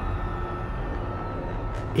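A low, steady rumbling drone with a few faint steady tones above it, an ambient background bed with no speech.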